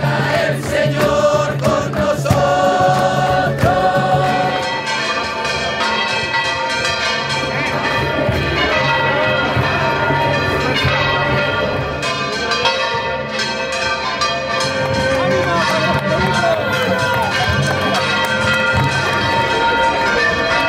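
A crowd singing together to acoustic guitars, giving way after about four seconds to church bells ringing a full peal over the noise of a large crowd.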